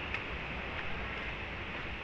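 Steady rushing background noise with no distinct events, apart from a faint click just after the start.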